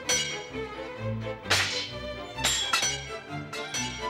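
Orchestral background score with strings over a moving bass line, punctuated by several sharp percussive hits.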